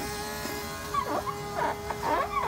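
Diesel truck's fuel pump running with a steady electric buzz, pressurising the fuel system so leaking injectors can be found. Short whining cries break in about a second in and again near the end.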